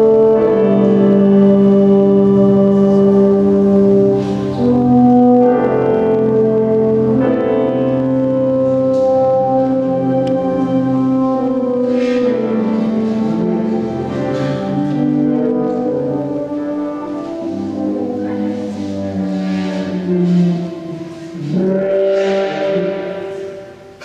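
Slow contemporary concert music of long held brass notes, several pitches sounding together and shifting every few seconds.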